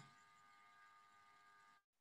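Near silence: a pause in speech, with no clear sound.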